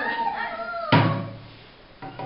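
A single loud bang about a second in, dying away with a short low ringing, after a moment of voices.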